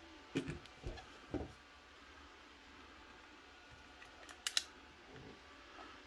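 Handling noise from a small plastic phone tripod: a few soft knocks in the first second and a half, then two sharp clicks close together about four and a half seconds in as a phone is pressed into the spring-loaded clamp.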